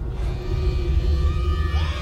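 A deep, loud rumble from the drama's soundtrack that starts suddenly, with held music tones above it.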